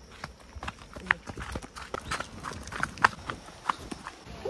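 Footsteps on a stony dirt trail: a quick, irregular series of short knocks and scuffs, with two louder steps about one second and three seconds in.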